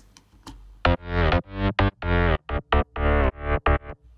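Layered Spire synth bass playing a choppy bass line of short notes, starting about a second in, while the high end of its mid-bass layer is being cut down with an EQ.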